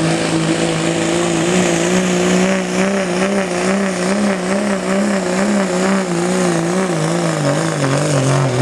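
Diesel pickup truck engine held at high revs under full load while pulling a weight-transfer sled. Its pitch wavers rapidly up and down throughout as the revs surge.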